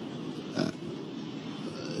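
A man's single short hesitant "uh" a little over half a second in, over steady background hiss from a room microphone.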